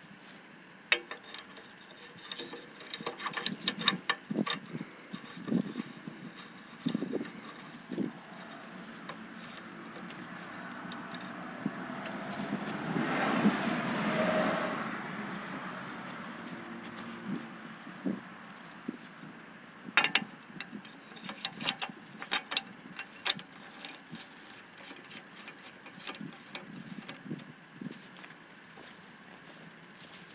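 Rubber-padded metal pier feet being handled and fitted onto aluminium legs: scattered clicks and knocks, in two clusters. Between the clusters a broad rushing sound swells and fades.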